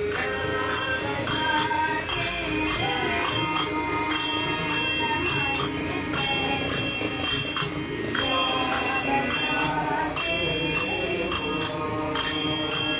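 Devotional bhajan singing by a group, kept to a steady beat by small hand cymbals (jalra) clashed a few times a second.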